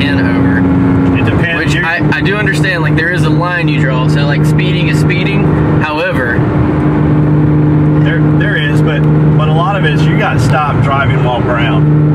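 Porsche Cayman S engine running steadily at highway speed, heard inside the cabin, its note stepping down in pitch about a second in. Talking goes on over it.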